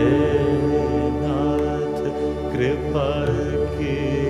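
Slow Hindi devotional song: a voice drawing out long, sliding notes over a steady drone.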